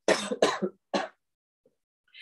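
A man coughing and clearing his throat: three short rough bursts within the first second or so.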